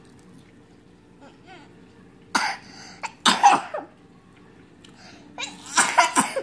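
A young child coughing, three short loud coughs a second or two apart.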